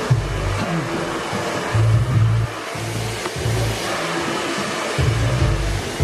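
Background music with a pulsing bass beat over a steady rushing hiss.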